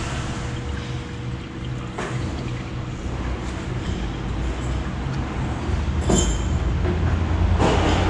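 Steady low mechanical hum, with a can of engine flush being poured into a car engine's oil filler and a couple of light knocks of the can about six seconds in and near the end.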